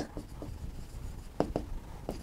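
Pen writing on a board: a few short taps and strokes near the start, and two more about a second and a half in.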